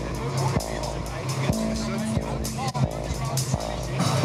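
Background music of a news report, sustained low notes changing every second or so, with the voices of a street protest crowd underneath.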